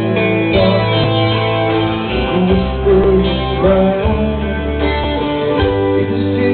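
Live rock band playing loudly, guitar to the fore over bass and drums.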